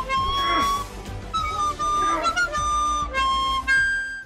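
Music: a lead melody of held notes that step up and down in pitch.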